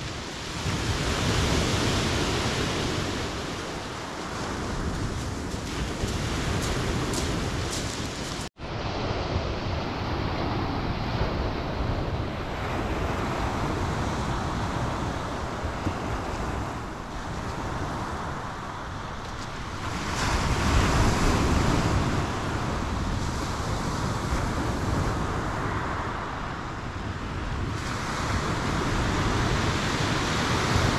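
Sea waves breaking and washing up a shingle beach, the surf swelling and easing every few seconds. There is a momentary break in the sound about eight seconds in.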